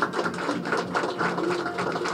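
A small audience applauding with dense, rapid hand claps.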